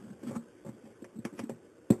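Handling noise: a scatter of light clicks and taps, then one sharp, louder knock near the end.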